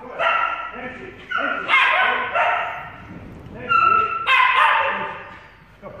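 Small dog barking repeatedly in short, high-pitched barks and yips during an agility run.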